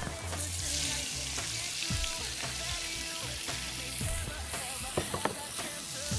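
Chopped onions, leeks and peppers tipped into hot oil in a plough-disc pan, with a burst of sizzling as they land; the frying then carries on steadily alongside the searing osobuco steaks.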